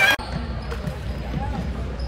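A basketball being dribbled on a wooden gym court: a series of short bounces over a steady low gym hum. Loud voices cut off suddenly just after the start.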